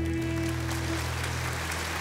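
A band's final held chord rings on and dies away over the first second or two, while audience applause swells up beneath it.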